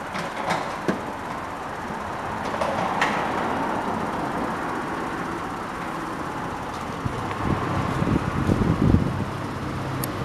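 Steady outdoor road-traffic noise, with a few light clicks in the first three seconds and a louder low rumble over the last three.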